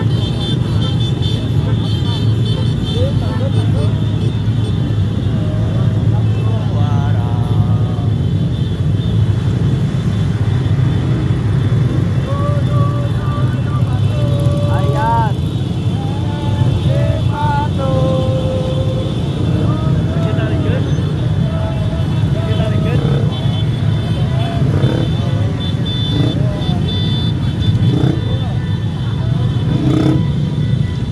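A large convoy of motorcycles running in a crowd, giving a steady low engine rumble. Voices call out over it, most clearly about halfway through.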